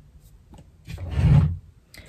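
A brief rubbing, rustling noise about a second in, lasting about half a second.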